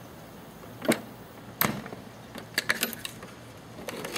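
Sharp clicks and knocks from the folding legs and frame of a 1998 Honda CR-V's spare-tire-lid camping table being folded and handled. There are about half a dozen in all, single ones early, then a quick run of three past the middle.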